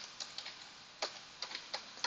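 Computer keyboard keystrokes: a few light, separate clicks at an uneven pace as a word is typed.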